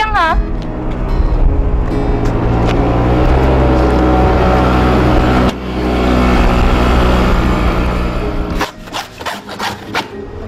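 Small motor scooter engine running steadily as the scooter rides off, a rasping sound with a low steady drone, briefly broken about halfway through. It gives way near the end to quieter scattered clicks.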